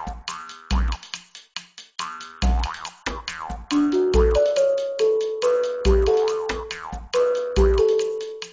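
Electronic background music with a heavy kick-drum beat, clicky percussion and short sliding synth tones; a stepped synth melody comes in about halfway through.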